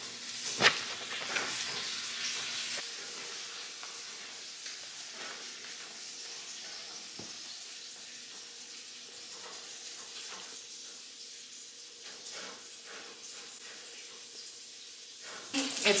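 Faint, steady sizzling of food frying in a pan on the stove, with small crackles and a sharp click just under a second in.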